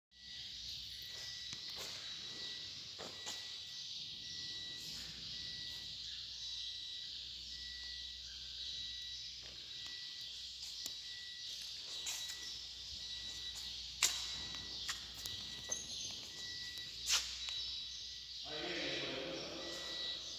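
Steady machinery hiss in a large shed, with a faint, broken high-pitched tone coming and going and a few sharp knocks, the loudest about fourteen and seventeen seconds in.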